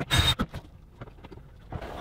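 DeWalt cordless drill/driver run in one short burst of about a third of a second, driving a screw into a cabinet front for a handle, followed by a light knock. This screw is being stubborn and won't seat easily.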